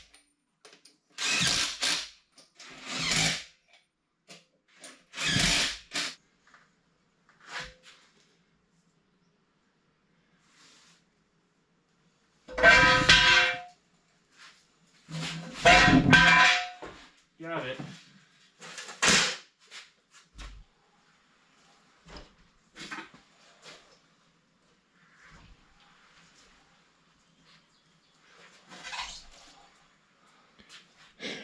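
A power tool run in short bursts of a second or two, about six times, with quiet gaps between.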